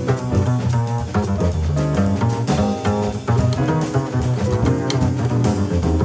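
Acoustic jazz group playing, with the plucked double bass standing out in the low register over the rest of the band.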